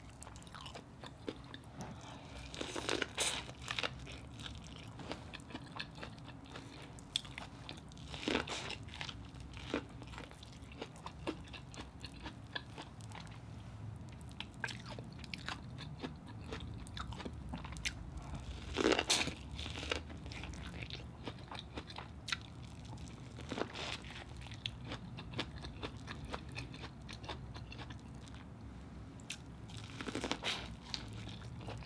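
Close-miked eating: a person chewing and biting corn on the cob from a seafood boil, with many small wet mouth clicks and four louder crunching bites spread through.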